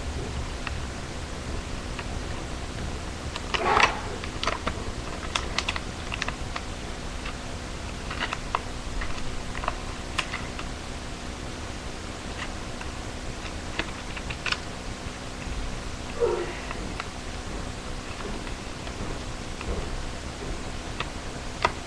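A sheet of paper handled and folded by hand: scattered small crinkles and taps, with two brief louder rustling scrapes, one about four seconds in and one near sixteen seconds.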